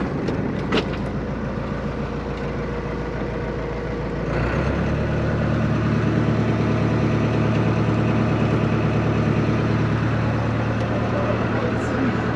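Boat engine running steadily, then throttling up about four and a half seconds in and staying louder as the boat gets under way.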